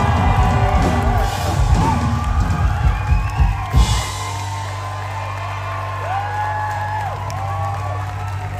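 Live rock band with electric guitars, bass and drum kit hitting the closing accents of a song for about four seconds, then letting a low chord ring on steadily. Crowd cheering and whooping over it.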